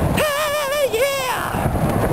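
A man singing one long held note with vibrato that drops off about a second and a half in. Wind rumbles on the microphone throughout.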